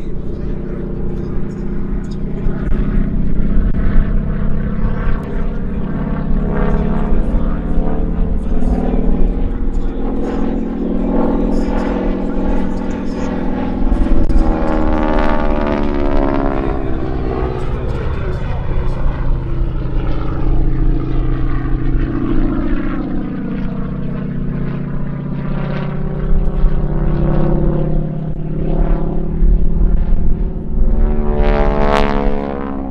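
North American Harvard IV's Pratt & Whitney R-1340 Wasp nine-cylinder radial engine and propeller in flight during an aerobatic display. The engine note is loud and continuous, sweeping up and down in pitch as the plane passes and manoeuvres.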